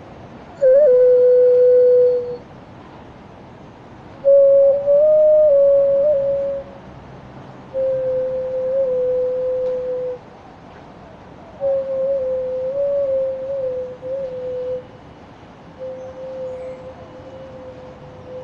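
Xun, the Chinese clay vessel flute, playing a slow melody of long held notes with small slides at their starts, in five phrases separated by short pauses. The later phrases are softer.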